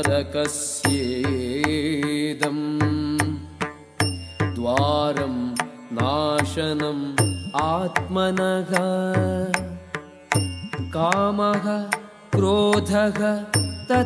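Sanskrit verse chanted to a melody over Indian classical-style devotional accompaniment, with sharp percussion strokes throughout.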